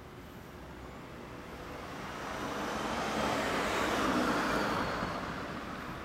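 A road vehicle passing by: traffic noise swells from about two seconds in, peaks around four seconds, and fades away by the end.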